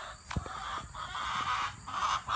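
A chicken clucking, a run of repeated calls starting about a second in.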